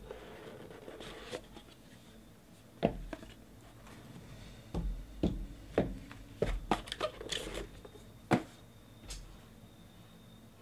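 Hands opening a cardboard trading-card box: a short rubbing hiss as the sleeve slides off, then a run of light knocks and clicks as the foam-lined lid is lifted away and the card in its plastic holder is taken out and set down, with a sharper knock near the end.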